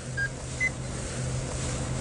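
Handheld RFID pocket reader giving two short beeps, the second slightly higher and a little under half a second after the first, as it is waved over an arm and reads an implanted VeriChip microchip. A faint low hum runs underneath.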